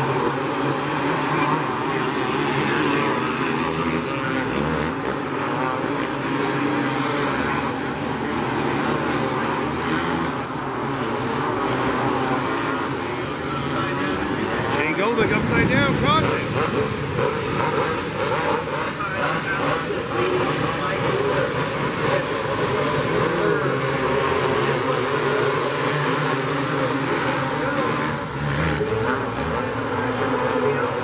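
A pack of winged outlaw karts racing on a dirt oval, their small engines running hard and rising and falling in pitch as they go through the turns. The karts are loudest about halfway through, as they pass close by.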